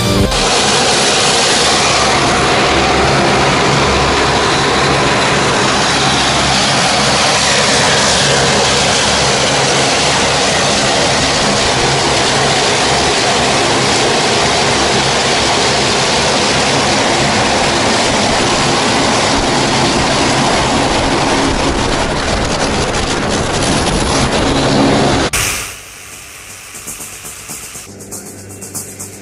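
Loud, steady noise of a propeller airplane's engine in flight, heard from on board, with music mixed in. About three seconds before the end the engine noise drops away abruptly and leaves a much quieter sound.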